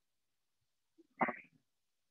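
Silence on the call audio, broken just past a second in by one short vocal sound lasting about a third of a second.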